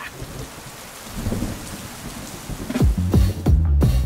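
Steady rain falling on wet wooden slats, with a low rumble underneath. About three seconds in, music with heavy bass drum hits comes in over it.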